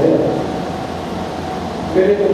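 A pause in a man's speech over a microphone: his voice trails off at the start, a steady hum of hall noise fills the gap, and he resumes right at the end.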